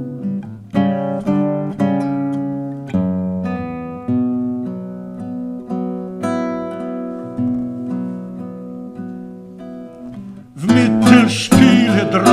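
Solo acoustic guitar playing a slow instrumental passage: plucked chords and single notes struck every second or so, each left to ring. Near the end it breaks into loud, fast strumming.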